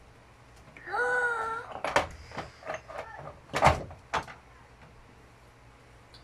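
A few sharp knocks and clinks as items are set onto the door shelf of a small refrigerator, the loudest about three and a half seconds in. A brief hummed voice sound comes about a second in.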